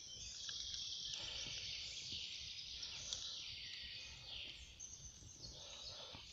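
Faint woodland ambience: a steady, distant high-pitched chorus of birdsong, with a light low rumble underneath.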